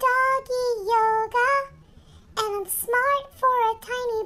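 A high-pitched voice singing unaccompanied, in two phrases with a short break about halfway.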